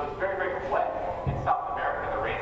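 A person talking, with no other clear sound beyond the voice.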